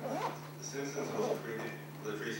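A person speaking in continuous talk over a steady low hum.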